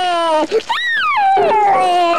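George Pig (a cartoon toddler's voice) crying in fright: a loud, high wail held in long notes, with the pitch swooping up and back down just before the middle.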